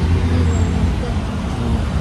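Steady low rumble of vehicle engines and road traffic, heard while riding along a busy city street.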